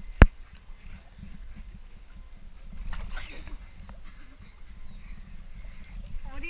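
A single sharp knock close to the microphone just after the start, over a low rumble of water lapping at the pool edge. About three seconds in comes a short, animal-like vocal noise from a person.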